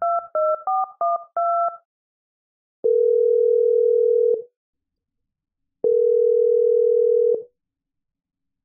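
Touch-tone phone keypad dialing the last few digits of a number, a quick run of two-tone beeps. Then two long ringback tones about three seconds apart: the call ringing through on the other end.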